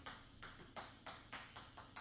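A quick, slightly irregular series of sharp light clicks, about five a second, each with a brief ring.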